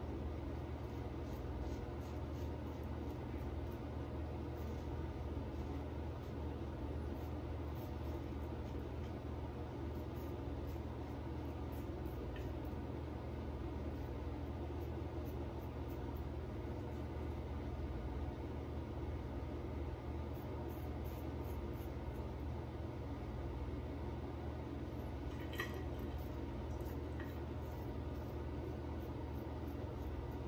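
Faint, irregular scraping of safety-razor strokes cutting stubble through shaving lather, over a steady low background hum.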